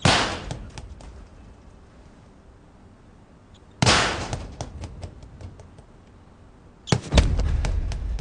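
Three loud bangs about three and a half seconds apart, each ringing out and fading over about a second with a few small clicks after it. The last bang is followed by a low, continuing rumble.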